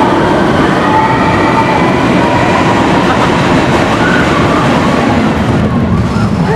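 Roller coaster train running fast on its track, heard from on board: a loud, steady rumble and rattle, with faint drawn-out squealing tones over it.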